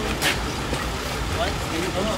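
Scattered voices of people talking nearby over a steady low background rumble, with a brief rustle about a quarter second in.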